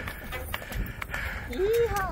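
Donkey hooves clopping on stone steps as it walks downhill: a run of irregular hard knocks. A person's voice comes in near the end.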